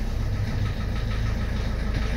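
Renault 1.5 dCi diesel engine idling steadily just after starting. It started directly with an injection fault still flagged, even after the fuel rail pressure sensor was replaced.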